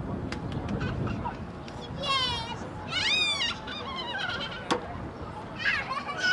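A few loud, high-pitched bird-like calls: a rapid warbling call about two seconds in, then a longer call that rises and falls in pitch, with another starting near the end.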